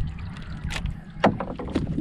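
Water lapping around a small outrigger canoe (banca), with three light knocks spread through the moment.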